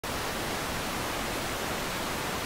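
Analog TV static: a steady, even hiss of noise.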